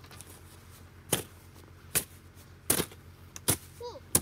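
Yellow plastic snow shovel chopping and scraping into packed snow, four sharp strikes a little under a second apart.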